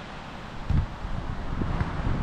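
Wind buffeting the microphone, an uneven low rumble that swells briefly a little under a second in.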